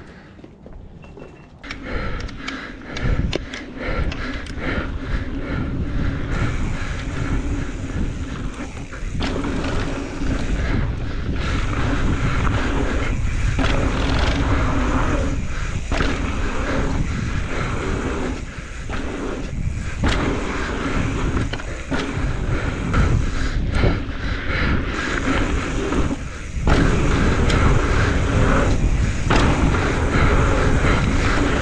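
A mountain bike rolling fast over a hard-packed dirt singletrack: steady tyre noise with knocks and rattles as the bike goes over bumps, and wind rumbling on the microphone. It starts quiet and builds up loud within the first couple of seconds as the bike gets up to speed.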